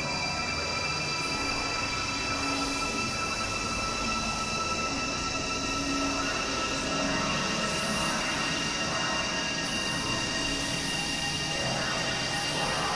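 Experimental electronic synthesizer drone: several steady high-pitched tones held over a dense, noisy wash, with short low notes coming and going underneath.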